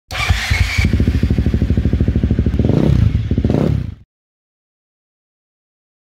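Single-cylinder dirt bike engine running with a rapid, even firing beat, revving up twice near the end and then cutting off suddenly.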